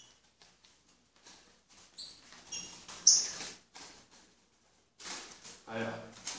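A caged songbird giving short, high chirps, three of them within about a second starting two seconds in. Near the end, a louder stretch of wing flapping and rustling as a bird flutters in its wire cage.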